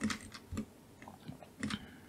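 Several faint, irregular clicks from a computer mouse and keyboard, about half a second apart.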